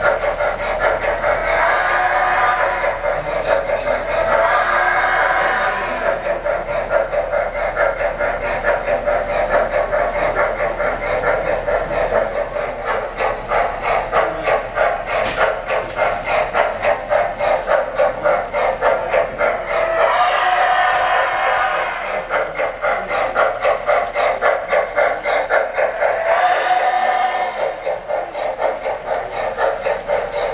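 Sound system of a model N&W 'J' class 4-8-4 steam locomotive: a steady rhythmic steam chuff as the train runs. Its steam whistle blows twice near the start and twice more in the second half.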